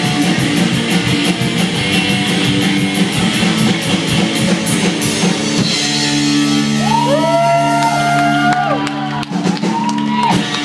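Live rockabilly band playing the close of a song: electric guitar, slapped upright bass and drum kit. About halfway through the playing gives way to a long held chord ringing out, with a sliding high note that rises, holds and falls over it.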